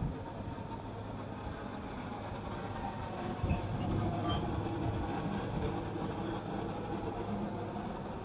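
Outdoor ambience dominated by a steady low engine hum, with faint voices of people talking in the background.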